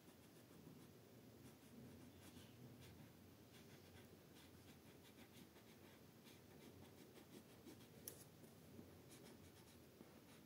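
Faint scratching of an orange colour pencil shading on paper in short back-and-forth strokes, with one sharp tick about eight seconds in.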